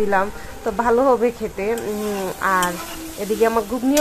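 A metal spatula stirs a thick chickpea and soya-chunk curry as it sizzles in a metal pan. A voice talks on and off over the stirring.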